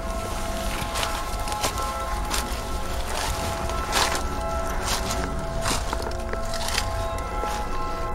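Background music with sustained held notes, over footsteps crunching on dry fallen leaves and stone steps, roughly one step a second.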